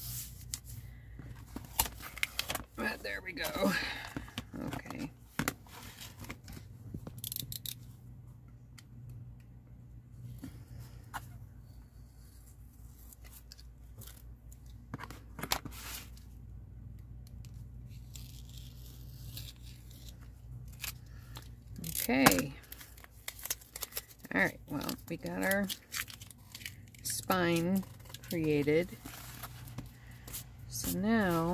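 Brown paper strip being handled and pressed onto a book cover's spine, with crackling and tearing of paper and small scissors snipping off the excess, as a string of sharp clicks and rustles. Short stretches of wordless voice come in a few seconds in and again near the end.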